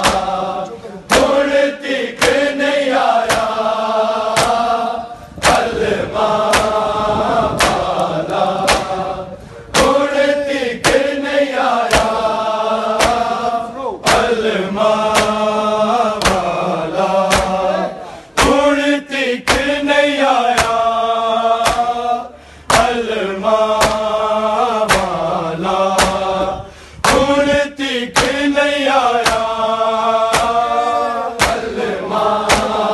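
Men chanting a Muharram lament (noha) together in repeating sung phrases, punctuated by regular sharp slaps of matam: open hands striking bare chests in time with the chant.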